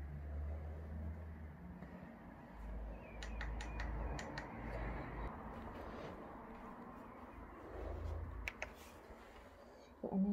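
Footsteps and camera-handling noise as someone walks through a room with litter on the carpet: a low rumble throughout, with a quick run of short, sharp clicks about three to four seconds in and two more just past eight seconds.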